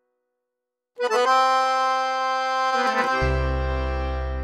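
Accordion playing. After a second of silence a loud chord comes in and is held, and a little after three seconds deep bass notes join beneath it.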